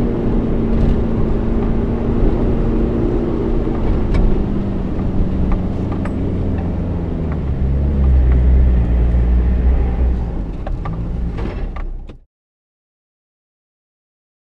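A four-wheel drive's engine pulling through shallow river water with water splashing, working harder and deeper about eight seconds in as it climbs out onto the sandy bank. The sound cuts off suddenly about twelve seconds in.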